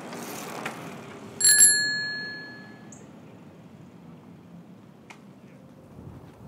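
Bicycle bell rung with two quick strikes about one and a half seconds in, its bright tone ringing on for about a second.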